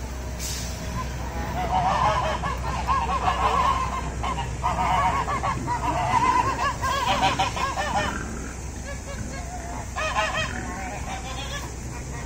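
A flock of domestic geese honking at feeding time: many quick, overlapping honks build up about two seconds in and carry on for around six seconds before dying down, then another short burst of honking comes near the end.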